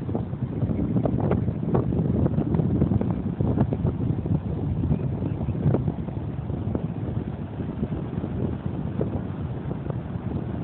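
Wind buffeting the microphone as a steady low rumble, with scattered soft knocks.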